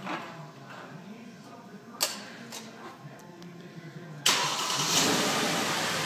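A sharp click about two seconds in, then a little over four seconds in the 2012 Mercedes-Benz GL450's V8 suddenly starts by remote start and keeps running steadily.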